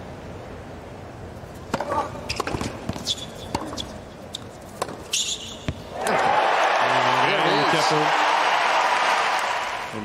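A tennis ball bounced several times on a hard court before a serve, with a few sharp knocks. About six seconds in a large stadium crowd breaks into loud cheering and applause that holds for about four seconds and fades near the end.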